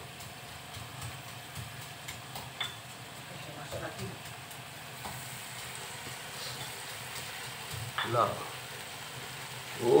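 Curry paste and gravy sizzling steadily in a wok, with a few faint knocks of a spatula in the first few seconds.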